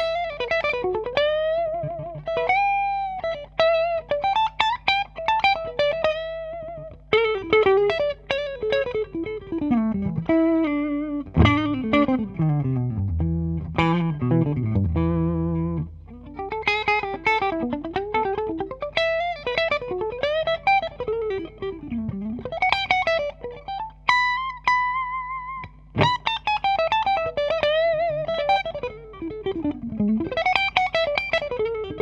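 A 2017 Gibson Les Paul Faded T electric guitar with humbuckers, played clean through a Fender Supersonic 22 combo amp. It plays a single-note solo with string bends and vibrato, a run that falls to low notes midway, and a long held high note near the end.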